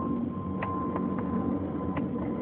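Steady low rumble of an aeroplane passing overhead, with a thin steady high whine running through it and a few faint clicks.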